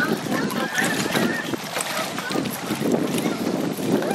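Wind buffeting the microphone over lapping water, with faint, indistinct voices.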